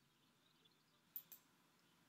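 Two quick computer mouse clicks about a second in, over near-silent room tone.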